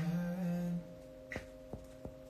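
A low male voice humming a melody over soft background music with long held notes. Two faint clicks come in the second half.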